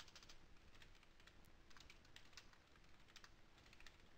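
Faint typing on a computer keyboard: quick, irregular keystrokes in short runs.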